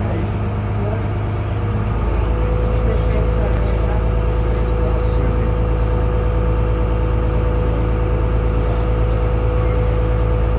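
A boat's engine running with a loud, steady low drone; about two seconds in it grows louder and a steady higher whine joins it.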